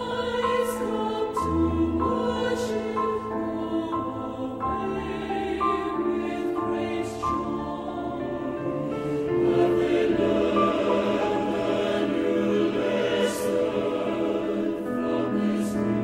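Mixed choir singing a sacred choral song with piano accompaniment.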